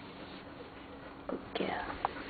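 Three-day-old Dalmatian puppy giving a short, high squeal that falls in pitch, about one and a half seconds in, after a faint sound just before it.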